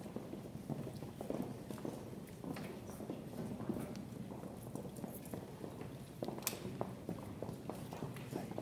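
Footsteps of a group of people walking across a hardwood gym floor, with shoe heels clicking irregularly, over a low murmur of voices.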